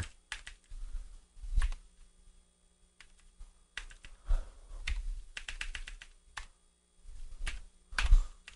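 Typing on a computer keyboard: short bursts of rapid keystrokes separated by brief pauses.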